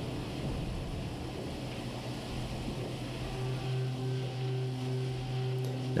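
Mori Seiki horizontal machining center milling 6061 aluminum with a half-inch end mill under flood coolant: a steady hiss of coolant spray over the hum of the spindle and cut. About halfway through, a steadier, higher tone joins the hum.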